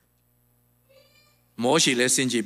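A hushed pause with a faint, short, high-pitched sound about a second in, then a man's voice comes in loudly over the microphone about one and a half seconds in, its pitch gliding.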